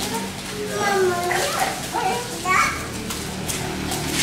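Group chatter of children and adults, with high-pitched children's voices calling out.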